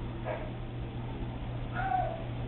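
Two short pitched animal calls, about a second and a half apart, over a steady low hum.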